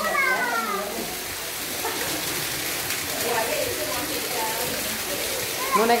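Talking voices, among them a high child's voice at the start, fainter talk in the middle and a voice again at the end, over a steady background hiss.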